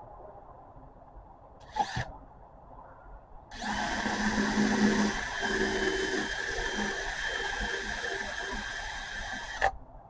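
Craftsman cordless drill with a 1/8-inch bit boring through a wooden dowel held in a drill guide block. A short burst comes about two seconds in, then the drill motor runs steadily for about six seconds and stops abruptly just before the end.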